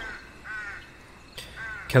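Crows cawing twice in the background, short calls about a second apart.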